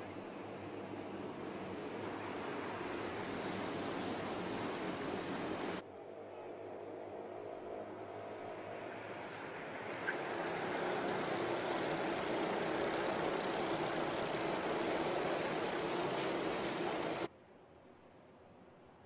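Engines of a pack of racing karts running at speed, a steady drone that builds over the first few seconds. It breaks off abruptly about six seconds in, swells louder again about ten seconds in, and drops away sharply near the end.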